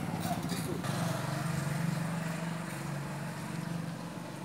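Small two-wheeler engine running at a steady low hum.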